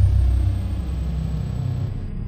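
Deep low rumble of a cinematic logo-sting boom, slowly fading, with a thin high whine above it.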